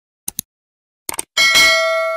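Mouse-click sound effects: a quick double click about a quarter second in and another short cluster of clicks about a second in, followed by a bright notification-bell ding that rings on and slowly fades.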